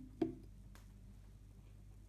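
A single knock about a quarter of a second in, a glass beer bottle set down on the table, followed by a couple of faint ticks.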